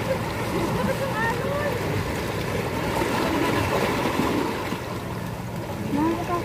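Shallow sea water washing steadily around shoreline rocks, with faint voices in the background.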